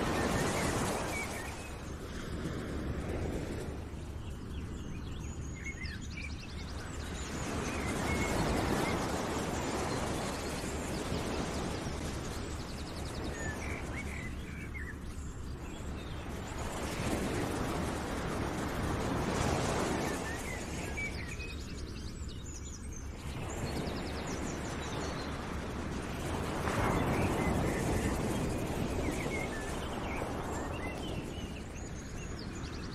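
Outdoor nature ambience: a rushing noise that swells and fades roughly every eight seconds, with scattered bird chirps.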